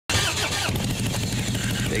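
Motorcycle engine idling steadily, a low even rumble.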